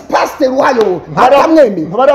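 Speech only: a man talking in an animated way, his voice swooping up and down in pitch.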